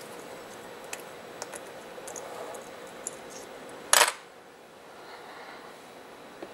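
Fingers handling a small circuit-board audio module and its micro SD card: a few faint clicks, then one sharp click about four seconds in.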